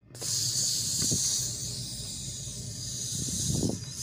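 A steady high-pitched hiss, with faint low rumbling sounds about a second in and again near the end.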